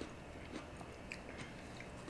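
Faint chewing of crisp, juicy honey kiss melon flesh, with a few soft crunchy clicks.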